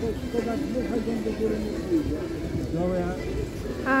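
Indistinct speech: people talking, not clear enough to make out words.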